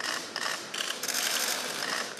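Many camera shutters clicking rapidly and overlapping into a dense clatter.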